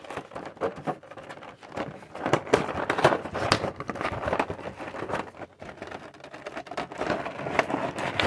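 Action-figure packaging being worked open by hand: the clear plastic window and cardboard box crinkling and crackling in a busy run of small snaps and rustles.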